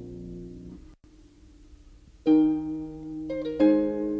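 Solo harp music: a held chord rings out and fades, cuts off briefly about a second in, then new plucked chords come in loudly a little after two seconds and again near the end.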